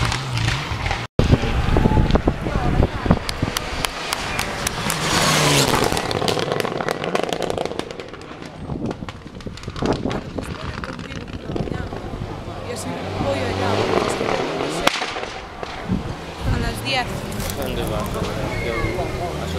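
Rally car engine on a special stage, with a run of sharp cracks and pops in the first few seconds, over spectators talking.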